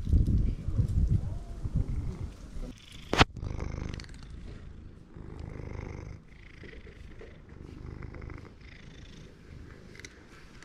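Tabby cat purring close to the microphone as it is stroked, the purr going in breath-by-breath cycles, loudest in the first few seconds. A single sharp click comes about three seconds in.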